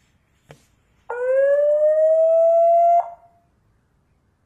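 An Annke I81CG indoor security camera's built-in alarm siren, the alarm it sounds on detecting motion. It sounds once for about two seconds, a single tone that rises slightly in pitch and cuts off with a click. A faint click comes about half a second in.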